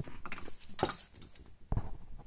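A few light, irregular knocks and handling rustle from a clear plastic tube of battery cells being moved and set on a bench.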